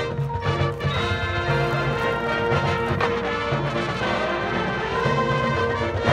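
High school marching band playing its field show: held brass chords over a pulsing low drum line, with several sharp percussion hits.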